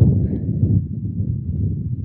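Wind buffeting the camera microphone on a kayak out on choppy open water: a loud, uneven low rumble.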